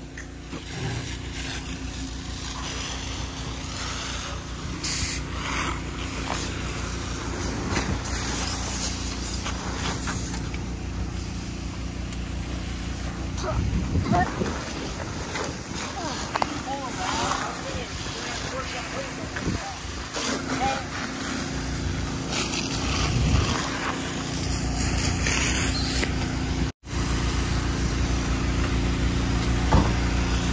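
A truck engine running steadily under the hiss of a fire hose spraying water onto a smoldering semi truck, with indistinct voices now and then. The sound cuts out for a moment near the end.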